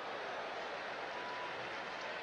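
Ballpark crowd noise: a steady, even murmur from a large stadium crowd, with no single voice standing out.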